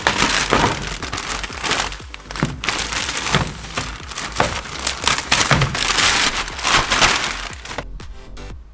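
Clear plastic packaging crinkling and rustling in irregular spurts as it is pulled off a new front fender by hand.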